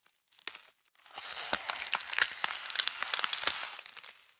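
Dense rustling and crackling with many sharp clicks, starting about a second in and dying away near the end.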